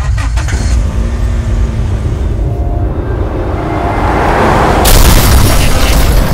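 A deep rumble starts suddenly and swells over several seconds. About five seconds in it breaks into a loud rushing, hissing burst, which then begins to fade.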